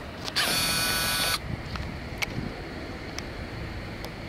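A short, loud buzzing rattle that starts sharply shortly after the start, lasts about a second and cuts off suddenly, over low outdoor background with a couple of faint clicks.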